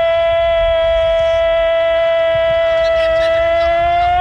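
A Spanish-speaking radio football commentator's goal cry: one long "gooool" held at a single steady pitch without a break.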